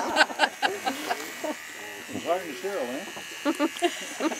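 Corded electric hair clippers running with a steady buzz as they trim hair from a man's face and head.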